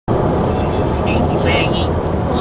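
Steady low rumble of a car's engine and road noise heard inside the cabin while driving, with short soft sounds like a voice near the end.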